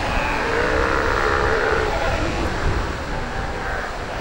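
South American sea lion colony calling: long, wavering calls over a steady rushing background.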